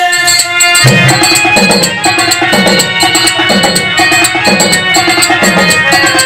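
Instrumental interlude of Tamil stage-drama accompaniment: harmonium holding tones over a tabla pair, whose bass strokes bend downward in pitch about once a second, with small hand cymbals ticking in time.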